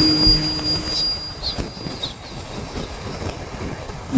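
A pause in amplified Quran recitation: the last held note of the reciter's voice fades away over about a second through the loudspeaker system, leaving steady low background noise.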